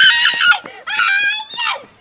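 Young boys screaming with excitement in celebration of a success: two long, high-pitched, loud screams, the second about a second in.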